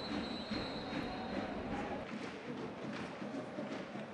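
Faint, steady stadium ambience from a football match: a low, distant crowd murmur with no distinct events.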